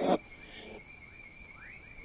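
Night insects trilling steadily in two high, unbroken tones, with a few short, faint rising chirps in the second half. A voice cuts off right at the start.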